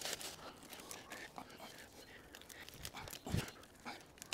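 Rustling and crackling of wooden branches and dry leaf litter being handled and stepped on, with a dull thump a little over three seconds in.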